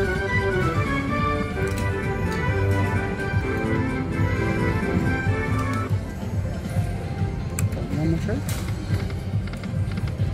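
Pokie machine win tune with a melody playing while the win meter counts up the free-game win, stopping about six seconds in. After that, casino background noise with voices.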